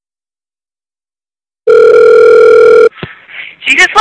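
Telephone ringing tone heard down the line: one loud, steady ring of a little over a second that cuts off sharply. A click follows as the call is answered, then line hiss and a voice coming on near the end.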